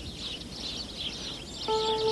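Faint outdoor ambience of small chirping birds, steady throughout. A held music chord comes in near the end.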